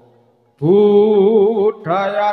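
A singer chanting in a Javanese style. After a short lull, a loud, long note with a strong wavering vibrato comes in about half a second in, and a new phrase begins near the end.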